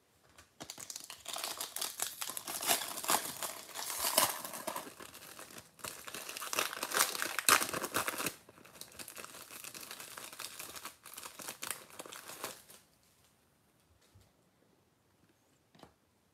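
Hands tearing open and crinkling the plastic wrapper of a hockey trading card pack, in uneven crackling bursts for about twelve seconds, then stopping.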